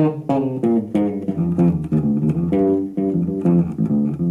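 Electric bass guitar playing a fast single-note line, about four notes a second, mixing picked notes with left-hand hammer-ons and pull-offs, so that the slurred notes sound almost as if each was picked.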